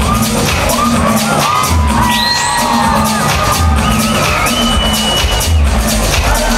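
Loud electronic dance music on a nightclub sound system, with a steady, bass-heavy repeating beat and crowd noise. From about a second in, high gliding whistle-like tones rise and hold above the mix until near the end.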